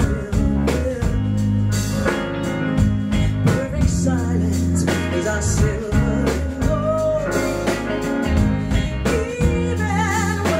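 A live band playing a song: electric guitar, bass, drums and keyboards, with a woman singing lead.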